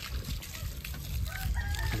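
A rooster crowing, coming in about halfway through and growing louder, over a low rumble and scuffing on wet ground.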